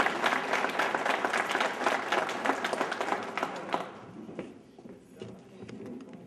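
Audience applauding, a dense patter of clapping that thins out and fades about four seconds in, leaving a few scattered claps.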